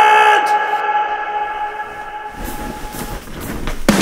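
A man's drawn-out yell held on one steady pitch, fading away over about three seconds, then a rising rumbling whoosh that builds toward the end.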